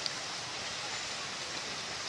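Steady rushing noise of an electric commuter train running along the tracks as it pulls away, with one short click just after the start.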